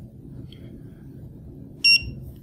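A short, high electronic beep from a Horner XL Series controller's touchscreen near the end, as the 'Yes' on the Install Bootloader prompt is pressed and the bootloader install starts.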